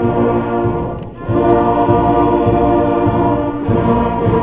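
A fifth-grade school concert band playing held chords. The sound drops briefly about a second in, then the full band comes back in louder.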